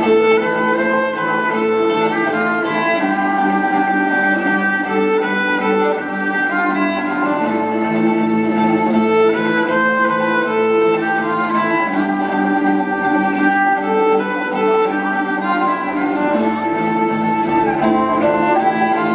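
Music for a Georgian folk dance: bowed strings play a flowing melody over sustained lower notes, steady and unbroken throughout.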